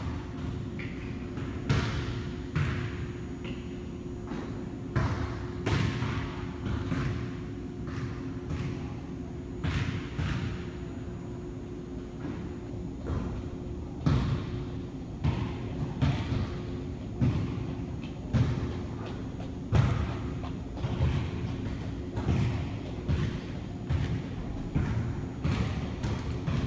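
Irregular dull thuds and knocks, roughly one to two a second, each ringing briefly, over a steady low hum.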